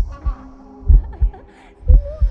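Heartbeat sound effect: deep double thuds, about one pair a second, three times, over faint sustained tones.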